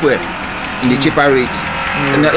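A man's voice speaking briefly about a second in, over a steady hiss of outdoor background noise.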